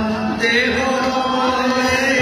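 Group devotional chanting of a Vaishnava kirtan during an arati, voices singing over a steady held note.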